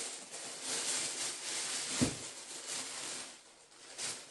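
Tissue paper rustling and crinkling as it is pulled and lifted out of a boot box, with a single soft thump about two seconds in.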